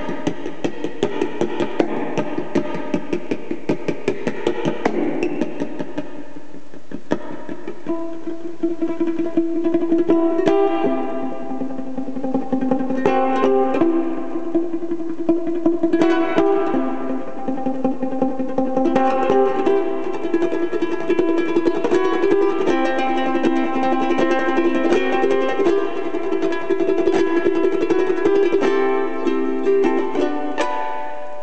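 Solo ukulele: rapid strumming for the first several seconds, then a slower plucked melody over ringing notes from about ten seconds in.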